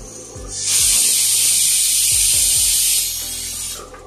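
Pressure cooker whistle letting off steam: a steady hiss that starts about half a second in and cuts off just before the end. It marks the moong dal inside as cooked under pressure.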